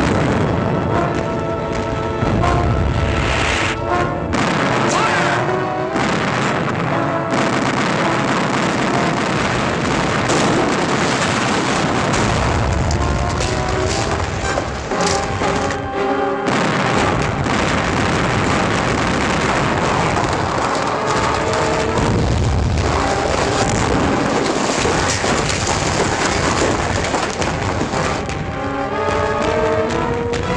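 Film-score music playing over repeated booms of cannon fire and explosions in a sea battle.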